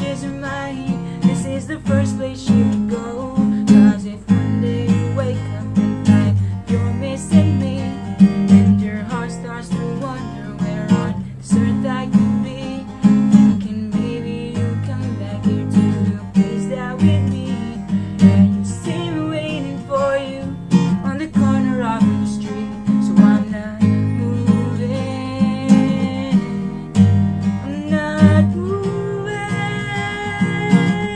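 Acoustic guitar with a capo on the neck, strummed steadily in rhythm, accompanying a man singing.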